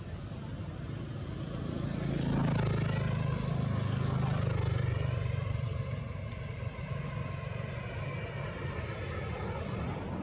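A motor vehicle engine passing by: a low running hum that grows louder about two seconds in, peaks, and fades gradually after about five seconds.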